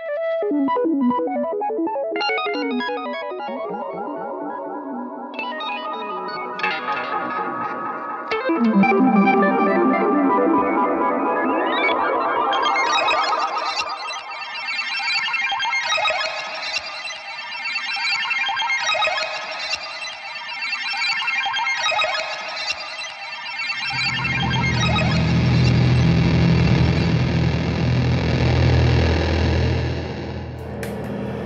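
1959 Fender Jazzmaster electric guitar played through an EarthQuaker Devices Arpanoid arpeggiator pedal and delay, giving fast cascading arpeggiated notes that are looped and shifted in speed and pitch. About three-quarters of the way through, a heavy low fuzz noise from a ZVEX Fuzz Factory and Digitech Whammy joins the loop.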